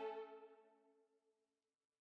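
Closing violin music ending on sustained notes that die away within about a second and a half, then silence.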